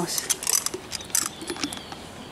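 Metal horse bit and its chain clinking in a few short clicks as the bit is taken out of a horse's mouth, thinning out in the second half.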